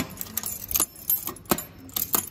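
A ring of keys on a carabiner jangling and clicking against the metal door and lock of a brass post office box as a key is worked at it: several sharp, irregular metallic clicks.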